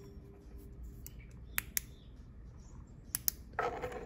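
Small flashlight's push-button switch clicking, two quick clicks about a second in and two more about three seconds in, as the light is switched on and off.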